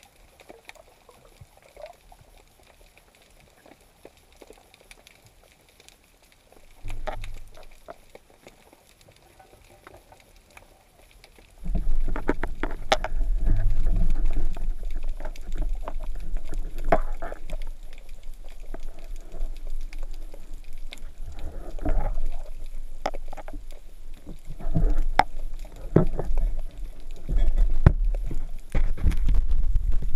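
Water noise picked up through a GoPro's underwater housing mounted on a speargun. It is faint at first. About a third of the way in, a loud, muffled water rumble with bubbling sets in, broken by repeated clicks and knocks as the gun and the speared fish on its shaft are handled.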